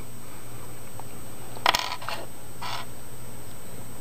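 A sharp click about a second and a half in, then a brief scrape about a second later, as a small wire-lead resistor is picked up and handled. A steady low hum runs underneath.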